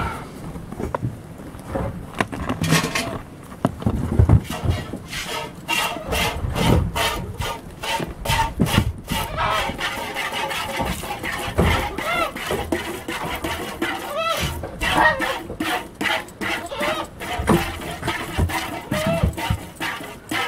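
A goat being hand-milked into a galvanized steel pail: jets of milk squirt into the pail one after another in a quick, steady rhythm.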